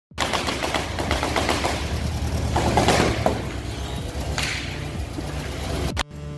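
Loud, fast run of clicks and rattles over a steady low drone, cutting off abruptly at the end.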